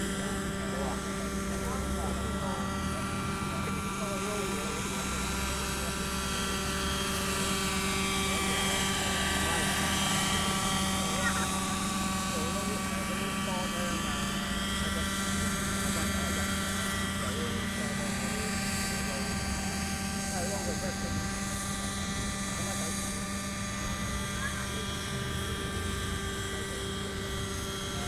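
Radio-controlled model helicopter flying: its glow engine and rotors give a steady whine made of many evenly spaced pitches. It grows louder about a third of the way in as the helicopter comes nearer, then eases back.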